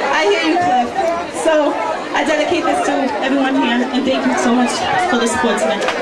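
Crowd chatter: many people talking at once, a dense babble of overlapping voices.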